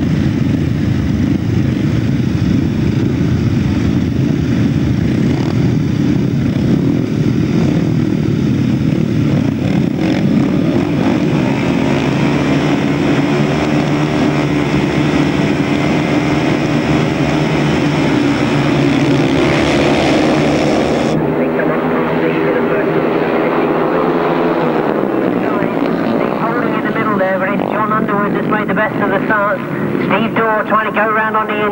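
A field of 500cc grasstrack solo motorcycles revving together on the start line. About two-thirds of the way through the sound changes abruptly, and near the end the engine notes climb and waver as the bikes accelerate away into the first bend.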